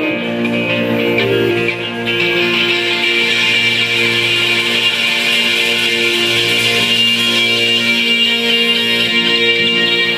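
Live band playing an instrumental passage: electric guitars and keyboard holding sustained chords, steady in level.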